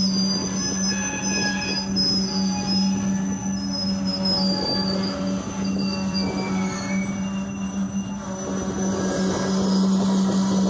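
Empty covered hopper cars rolling slowly past, their steel wheels squealing on the rail in thin high notes that wander in pitch, with a steady low hum underneath.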